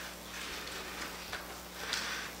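Quiet room tone in a small room: a steady low hum under faint, indistinct rustling.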